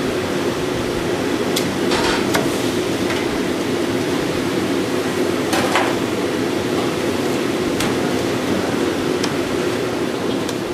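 A cleaver chopping a giant freshwater prawn on a wooden block: about seven sharp, irregularly spaced chops over a steady kitchen hum.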